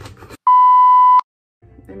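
Censor bleep: one loud, steady beep about three-quarters of a second long, edited in over her speech.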